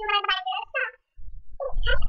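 A girl's high-pitched voice exclaiming "come on!", then another short voiced cry near the end, with low thumps underneath.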